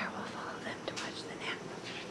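A person whispering softly: a few short breathy syllables.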